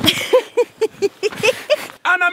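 A person laughing in a quick run of short, high, pitched bursts, about four or five a second, after a low thud at the start.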